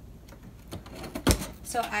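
A cardboard shipping box handled on a wooden table: a few faint taps, then one sharp knock about a second in.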